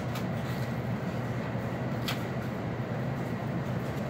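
Steady low machine hum of the cutting room's ventilation and refrigeration equipment, with a single sharp tap about two seconds in.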